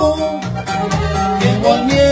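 Norteño band playing an instrumental passage: accordion running a quick melody over a tololoche (upright bass) plucking a steady rhythmic bass line with sharp regular clicks.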